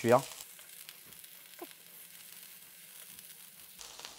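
Chicken fillets sizzling faintly as they sear in hot olive oil in a frying pan.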